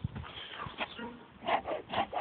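Bee smoker's bellows pumped in quick puffs of smoke, about four a second, starting about a second and a half in, after a few soft knocks.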